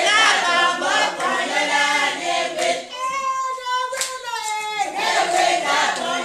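A group of women singing together for a dance, their voices wavering in pitch, with hand clapping and a couple of sharp claps in the second half.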